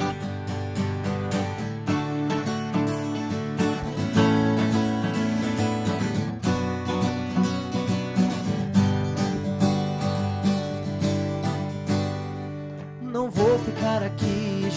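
Two acoustic guitars strumming a song's introduction in a quick, even rhythm of chords, easing off briefly near the end.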